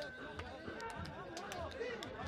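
Several voices calling and shouting at once, overlapping, from players on a beach soccer pitch, with a few short sharp clicks among them.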